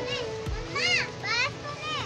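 A child's high-pitched voice in the background, three or four short calls rising and falling in pitch, over a faint steady hum.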